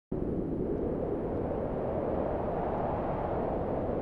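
A steady low rumbling noise that starts abruptly and holds even, with no tone or rhythm in it.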